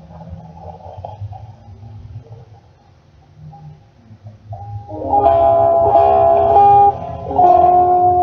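Guitar being played: a few soft, sparse notes, then louder strummed chords starting about five seconds in.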